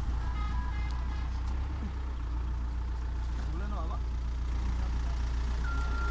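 Engine of a heavy rescue machine running steadily with a deep, even hum, with distant shouting voices over it and a steady electronic beep starting near the end.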